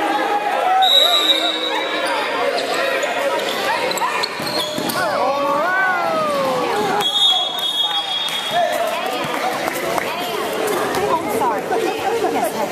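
A basketball bouncing on a hardwood gym floor during play, under the talk and shouts of spectators. Two brief high-pitched tones cut through, one about a second in and one about seven seconds in.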